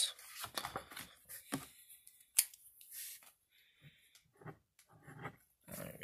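A paper scratch-off lottery ticket being handled and turned over, giving a scattered series of short scrapes, rustles and light clicks.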